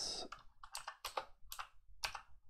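Computer keyboard being typed on: several separate, irregularly spaced keystrokes, quiet.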